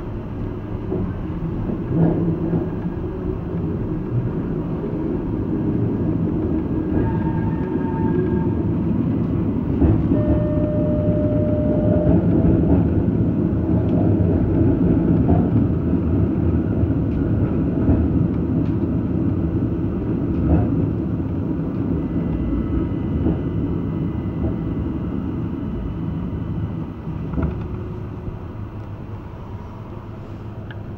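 Electric metre-gauge railcar of the AOMC running on street track, heard from inside the driver's cab as a steady rumble of wheels and traction motors. The rumble swells towards the middle and grows quieter over the last few seconds, and a few brief faint tones sound above it.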